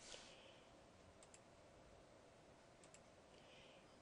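Near silence with a few faint computer clicks: a pair about a second in and another pair near three seconds.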